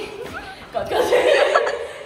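A woman calling 'kocchi, kocchi' ('this way, this way') and laughing, loudest about a second in.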